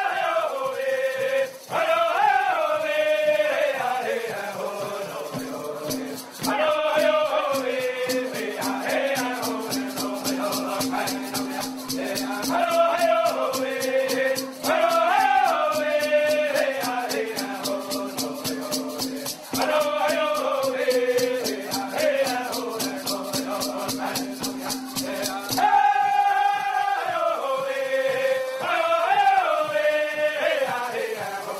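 Group of men singing an Iroquois women's shuffle dance song in unison, in repeated descending phrases. They are accompanied by shaken horn rattles and a water drum. The beat runs as a fast, even tremolo from about six seconds in until about twenty-five seconds in.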